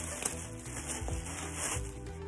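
Plastic clothing package rustling as it is opened and the garment pulled out, with background music underneath.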